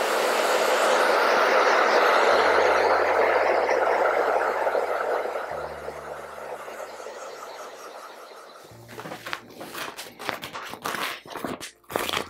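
Handheld hair dryer blowing steadily at the vinyl skin stuck to a laptop's aluminium underside. It fades out about two thirds of the way through, and then comes a run of sharp crinkling and crackling as the thin vinyl sheet is peeled off and crumpled.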